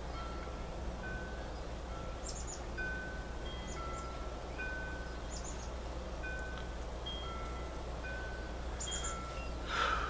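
Soft chime notes ring one at a time at irregular intervals, each a clear single pitch at one of several different pitches, over a low steady hum.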